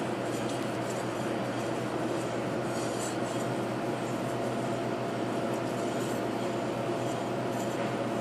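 A kitchen knife's steel edge being rubbed back and forth along a sharpening whetstone, a steady scraping.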